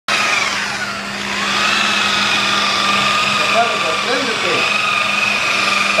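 Electric rotary polisher with a wool buffing pad running at high speed against a painted car panel, a steady motor whine. It slows briefly about a second in, then comes back up to speed.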